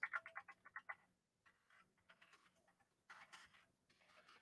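Near silence: room tone with a faint low hum, and a short run of faint rapid clicks, growing sparser, in the first second.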